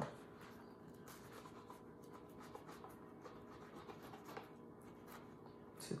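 A kitchen knife sawing through a tray of slider rolls on a plastic cutting board: faint, irregular scratchy strokes.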